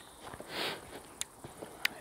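A quiet pause with one short breathy hiss about half a second in, then two faint sharp clicks.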